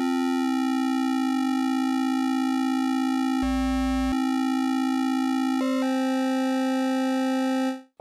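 One held synthesizer note: a saw wave built from stacked sine-wave harmonics in Alchemy's additive engine, with the beating effect detuning the harmonics so the tone wavers slightly. Its timbre shifts in steps as the settings change, with a brief low rumble under it a little past the middle.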